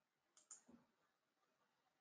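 Near silence broken by a faint pair of clicks about half a second in, followed by a soft low thump.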